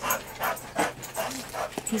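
A dog panting close by: a run of quick breathy puffs, about three a second.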